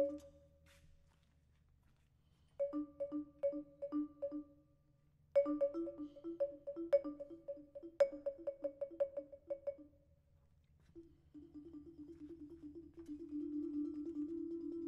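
Vibraphone played with yarn mallets in a free improvisation. A ringing chord dies away, then after a quiet gap come short groups of quick, repeated two-note figures with pauses between them, ending in a faster, denser run of repeated notes.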